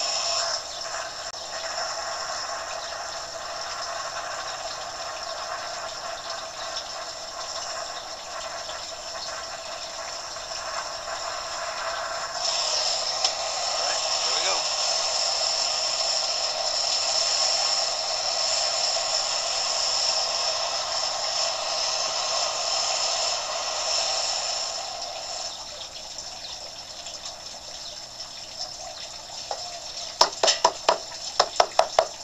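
Steady hiss of a gas flame heating a pot of scrap lead until it melts. It grows louder about twelve seconds in, then eases off again near the end.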